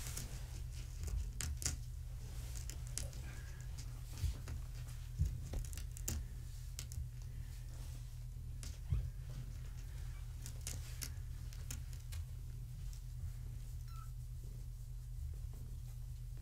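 Three-week-old kittens giving a few faint, brief high mews, with scattered soft clicks and knocks from them moving about on the mat, over a steady low hum.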